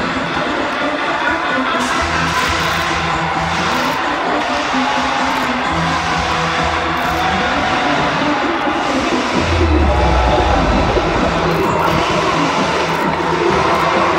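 Pre-game music playing over a stadium's loudspeakers, with a bass line that repeats every couple of seconds. A deep rumble comes in about nine and a half seconds in and lasts about a second and a half.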